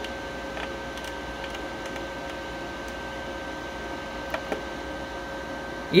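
Steady hum with two faint high steady tones from the powered-on MIG welder. A few faint clicks come from its rotary control knob as it is turned to adjust the welding voltage.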